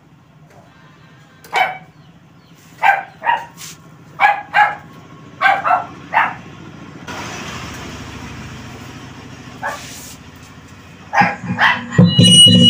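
A dog barking repeatedly, about a dozen short barks in clusters of two or three. A steady hiss sets in for about three seconds in the middle.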